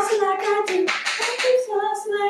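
A female voice singing a wordless tune on "la, da, da" syllables, in a string of held notes that step up and down in pitch.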